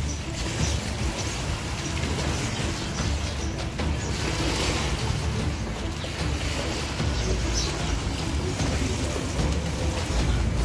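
Outdoor ambience of wind buffeting the microphone in a steady low rumble, with a few short, high bird chirps.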